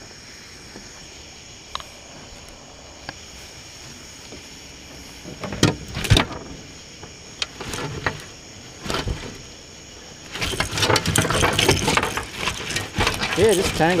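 Scattered knocks and clicks as a catfish is handled in a landing net on a boat deck, then, from about ten seconds in, a loud continuous rattling rustle of the tangled net mesh and line being worked.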